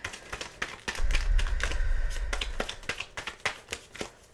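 A deck of tarot cards being shuffled by hand, a quick run of light clicks and taps of card against card. A low rumble sits under it for about a second and a half in the middle.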